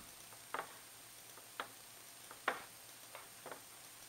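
Computer mouse clicking four times at uneven intervals, about a second apart, the third click the loudest, as menus and a settings dialog are opened.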